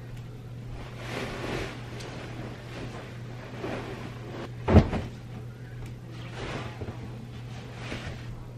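Duvet cover and down comforter rustling and swishing as they are shaken and flung out over a bed, in several sweeps, with one sharp thump near the middle.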